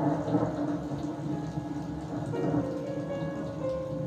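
Slow instrumental background music with held piano notes, overlaid by a steady wash of noise that is strongest in the first two seconds and then thins out.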